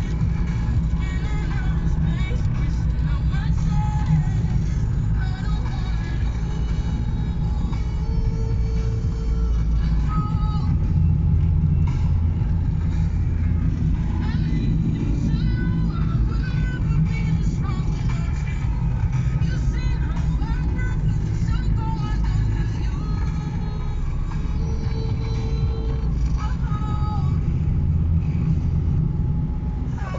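Steady low rumble of a car driving, heard from inside the cabin, with music playing over it.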